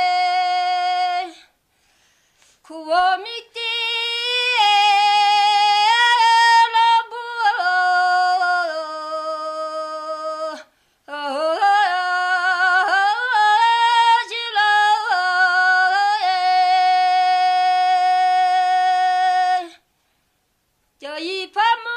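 A woman singing a Tibetan folk song unaccompanied, in long held notes linked by quick ornamented turns, breaking off briefly about a second in and again about halfway through.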